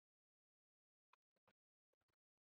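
Near silence, with a few very faint short clicks a little over a second in.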